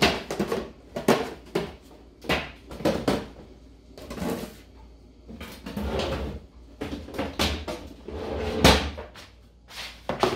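Kitchen clatter: a run of irregular knocks and bangs, like cupboard doors and kitchen things being handled, about one every second or so while dog food is got ready.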